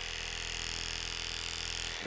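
Oster Octane cordless hair clipper switched on and running at a steady pitch: a level hum with a high hiss over it, a sound likened to a pet clipper.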